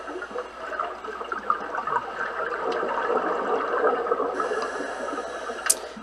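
Underwater water noise picked up by a camera in its housing beneath a swimming pool's surface: a steady bubbling, gurgling hiss from a scuba diver's surroundings and exhaust bubbles, with one sharp click near the end.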